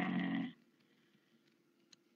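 A man's voice drawing out the last syllable of a spoken word for about half a second, then silence.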